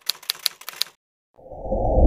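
Typewriter keystroke sound effect: a quick run of sharp clicks, about five a second, that stops just under a second in. A low rushing whoosh swells up about a second and a half in.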